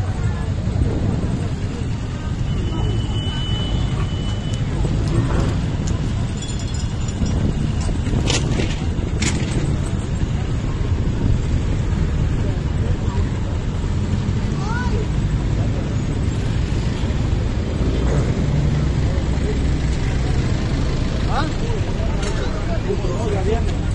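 Steady low rumble of a running motorcycle engine and road traffic, with indistinct voices of bystanders in the background. Two sharp clicks about eight and nine seconds in.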